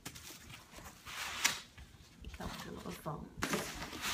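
Bubble wrap crinkling and foam packing blocks scraping against a cardboard box as they are handled and pulled out, in several uneven rustling bursts, the sharpest about one and a half seconds in.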